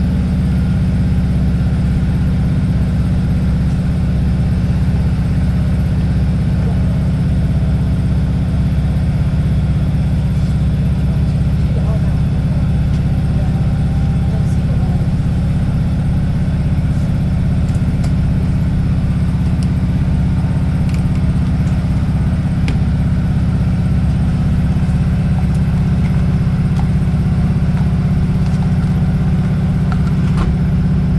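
Class 156 Super Sprinter diesel multiple unit running under way, heard inside the passenger saloon: a steady low drone from its underfloor Cummins diesel engine, with a few faint clicks about halfway through.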